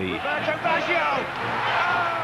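Football stadium crowd cheering after a goal, a steady roar with shouting voices rising out of it.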